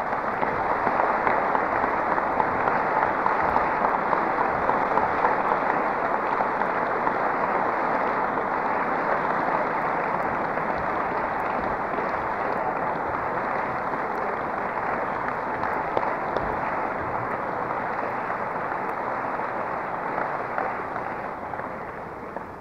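Audience applauding steadily, tailing off near the end.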